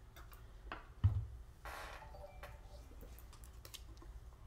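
Handling noise from a Cricut EasyPress 2 heat press and its plastic safety base: a thump about a second in, then a short rustle and a few light clicks and knocks.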